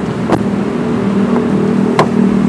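A single sharp click from a car's chrome outside door handle as it is pulled, about a third of a second in, over a steady low engine hum.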